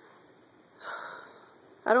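A single short sniff through the nose, about a second in.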